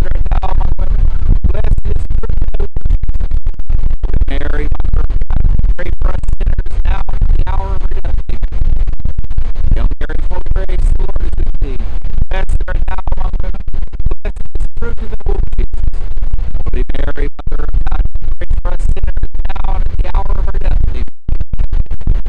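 Wind buffeting the microphone: a loud, constant low rumble with sudden dropouts that nearly drowns out a man talking.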